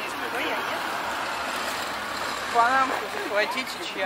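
Steady road-vehicle noise from the street, with a voice cutting in briefly a little past halfway through.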